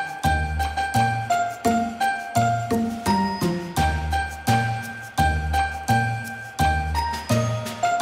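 Background music with a tinkling, bell-like melody over a steady beat and bass notes.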